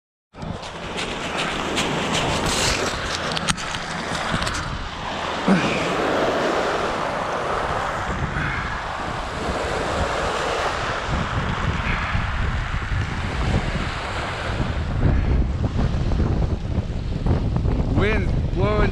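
Strong wind buffeting the microphone over small waves lapping on a gravel shore. The low wind rumble grows stronger near the end, and a few clicks and knocks come in the first few seconds.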